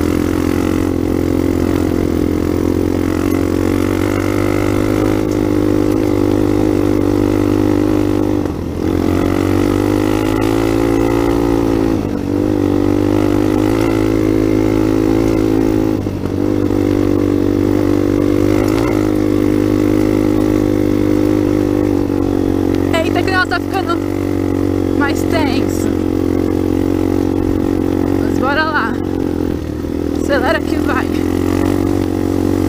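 Trail motorcycle's engine running steadily under way, heard from on the bike. The engine note dips briefly three times and climbs back in pitch after each.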